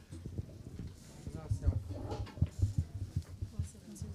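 Footsteps and shuffling as several people get up and walk across the floor: irregular low knocks, with faint chatter of voices in the room.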